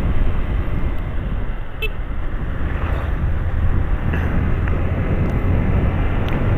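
Steady wind rush and road noise on a motorcycle-mounted camera's microphone while riding, over the running single-cylinder engine of a 2011 Honda CG 125 Fan.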